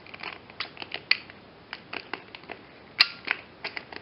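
Irregular sharp plastic clicks and snaps as the tool-free blade-holder lever of an old, dust-clogged Black & Decker jigsaw is worked by hand with the motor off. The clicks come unevenly, one strong one about a second in and the loudest near the end.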